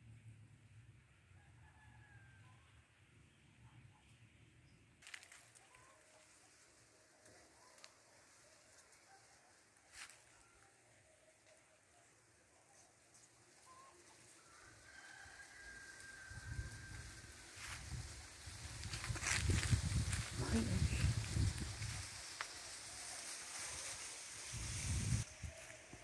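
A rooster crows faintly a couple of times over quiet countryside, with a few sharp snaps. Then, from about two-thirds of the way in, there is loud rustling of dry brush and cane with rumbling handling noise on the microphone.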